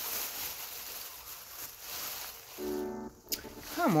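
Plastic shopping bag rustling as it is handled and rummaged through, a crackly noise that stops about two and a half seconds in. A short hum and a single sharp click follow.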